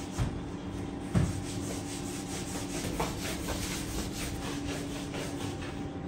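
Dough being pressed and rolled out on a floured wooden table: soft rubbing strokes with a few light knocks, the loudest about a second in. A steady low hum runs underneath.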